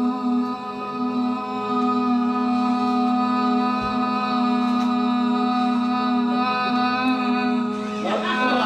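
A woman's voice holding one long sung note at a steady pitch through a microphone, in a contest to sustain a note as long as possible. The note breaks off near the end.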